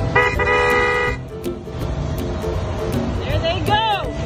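A vehicle horn sounds one steady blast of about a second, over a continuous low rumble. Near the end a voice rises in pitch.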